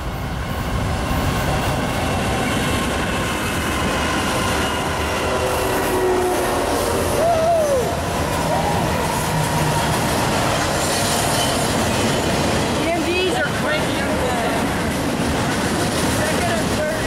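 CSX diesel freight train passing close by: the locomotive goes past about halfway through, then cars carrying highway trailers roll by, with a steady, loud rumble and rattle of wheels on the rails.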